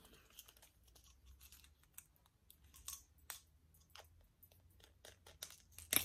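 Faint, scattered light clicks and rustles of crochet hooks and a yarn needle being handled in an open hook case, with a sharper click just before the end.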